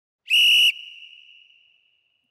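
Boxing interval timer's warning signal, a single short, loud, high whistle-like tone with a fading echo, sounding as about ten seconds of the rest period remain.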